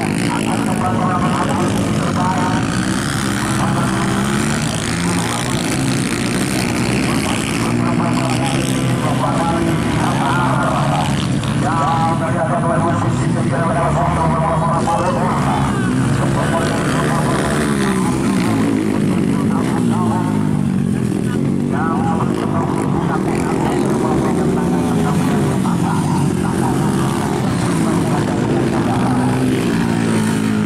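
Dirt bike engines revving up and falling back over and over as the riders work the throttle and shift through the track's turns and jumps.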